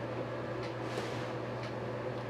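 Steady low hum and hiss of room background noise, with a few faint ticks.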